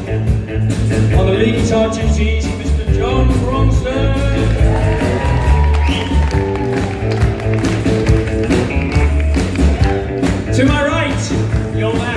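Live rock band playing on electric guitars, bass guitar and drums, loud and continuous with a steady beat.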